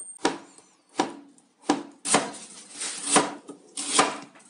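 Chinese cleaver slicing cucumber down onto a plastic cutting board: crisp separate cuts about every two-thirds of a second at first, then busier, closer cutting in the second half.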